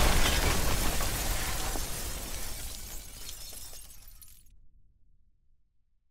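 Shattering sound effect for an animated sphere breaking apart: a dense crash of breaking debris that fades away steadily over about four seconds.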